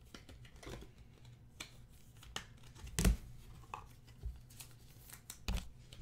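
Trading cards and clear plastic toploaders being handled, slid and stacked on a table: soft rustles and light clicks, with a louder tap about three seconds in and another near the end.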